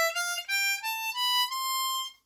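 C diatonic harmonica playing the C major scale in first position, climbing one note at a time, with the top note held near the end.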